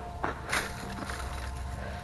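A couple of faint clicks as a snake-stick grabber's jaws reach into a jumping cholla and close on a spiny segment, over a low steady rumble of handling noise.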